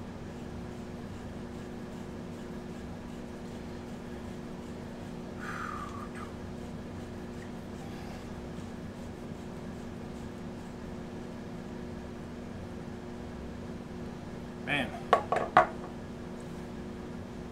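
Rifle scopes being set down on a wooden tabletop near the end: four or five sharp knocks close together. Before them there is only quiet handling over a steady electrical hum.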